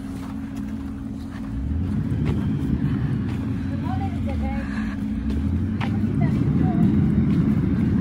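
Wind rumbling on the phone microphone while the camera walks along a snowy path, growing stronger about a second and a half in.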